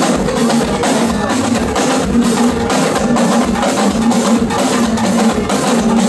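A live Yoruba drum ensemble playing together, a dense, steady rhythm of many drum strokes that keeps an even loudness throughout.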